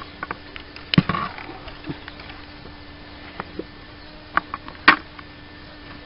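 Scattered short knocks and clicks from handling at the wooden gate of a hen run, the two loudest about a second in and near the end, over a faint steady hum.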